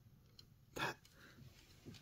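Faint light clicks of a small diecast model car being handled and turned over in the fingers, a few in the first half second, with one short spoken word just before the middle.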